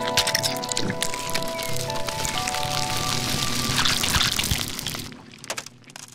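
Intro jingle: held electronic chord tones over dense crackling, spattering sound effects, the tones ending about two-thirds through and the crackle fading out near the end.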